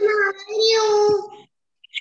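A child's voice in a sing-song chant, the last word held for about half a second. Then the sound cuts off abruptly.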